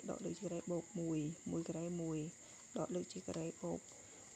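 A person talking in Khmer in short phrases while working through a calculation, over a steady high-pitched drone in the background.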